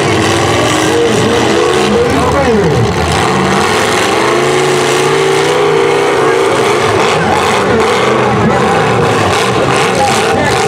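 Engines of several full-size demolition derby cars revving hard under load as the cars push against each other, their pitch repeatedly rising and falling, with one sharp drop in revs about three seconds in.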